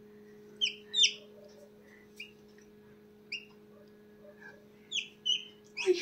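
A chick peeping from inside a pipped chicken egg: about six short, high peeps, each sliding down in pitch, spaced irregularly. A faint, steady low hum runs underneath.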